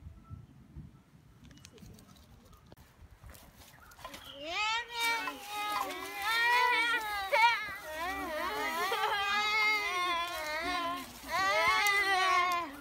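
A high voice wailing in long, wavering notes, coming in loud about four seconds in after near quiet.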